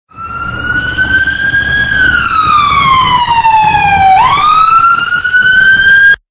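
Police car siren wailing: a slow fall in pitch, then a quick rise back up about four seconds in, over a low vehicle rumble. It starts and stops abruptly.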